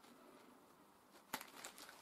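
Mostly near silence, then a sharp click a little over a second in and faint crinkling of plastic packaging being handled.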